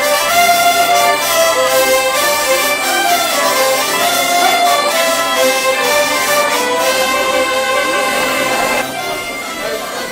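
Live folk dance music for a bourrée, played by clarinet and diatonic button accordions. About nine seconds in, the music drops in level.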